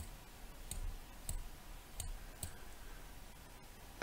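Computer mouse clicking: about five faint, separate clicks, roughly half a second to a second apart.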